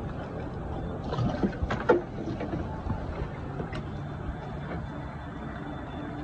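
Steady low outdoor noise of a bamboo raft ride on a calm river, with one brief sharp sound about two seconds in.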